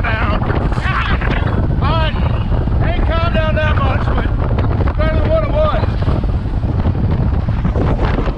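Bass boat running on plane at speed over choppy water, with heavy wind rushing over the microphone as a steady loud roar. A man's voice breaks through it in short stretches.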